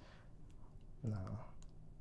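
A man's voice saying one short, quiet "no" about a second in, over low room tone with a few faint clicks.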